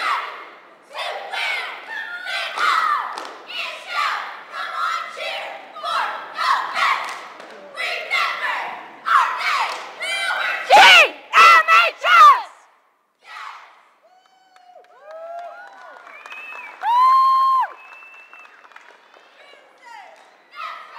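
Cheerleading squad shouting a rhythmic cheer in unison, ending in a few very loud shouts. After a brief lull come several high-pitched held yells, one loud and long.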